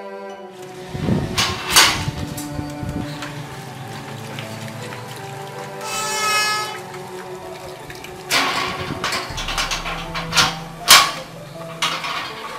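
Slow, sad film background music with long held notes. It is broken by a few sharp knocks, one about two seconds in and a louder cluster near the end, and a short high-pitched sound about six seconds in.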